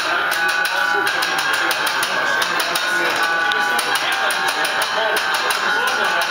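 Grindcore band playing live: fast drumming with rapid cymbal hits over guitar, with vocals on top.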